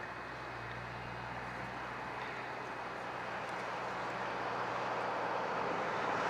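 Pickup trucks on the road, one towing a horse trailer, approaching and passing: a steady low engine hum with tyre noise that grows gradually louder as they come close.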